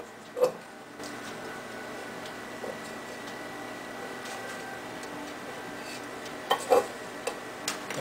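A few light clicks and taps of a tin can and a small glue tube being handled against a tile countertop, the sharpest about half a second in and a small cluster near the end, over steady faint background noise.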